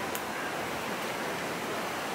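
A steady, even hiss with no change in level.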